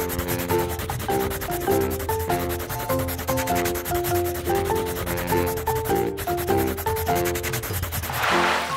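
A marker pen rubbing and scratching on paper as it draws, over background music with a simple stepping melody.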